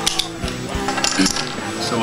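Poker chips clicking and clattering on a table in a few quick clusters: near the start, around one second in, and near the end. Background music plays underneath.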